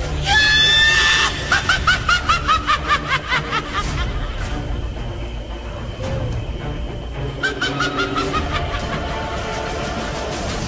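A high-pitched cackling laugh: a held shriek breaks into a rapid run of 'ha-ha-ha' that falls in pitch. A second, shorter cackle comes about seven and a half seconds in, over dark, low sustained background music.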